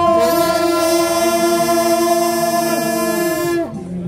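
Long straight brass ceremonial horns, at least two blown together, holding one loud sustained note for about three and a half seconds that sags in pitch as the players run out of breath near the end.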